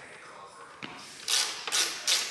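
Hand screwdriver working a screw on a motorcycle's front-end bracket: a small click, then two short rasps close together in the second half.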